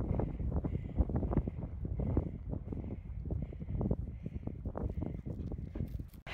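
Strong gusty wind buffeting the microphone: an uneven low rumble broken by many short knocks and pops.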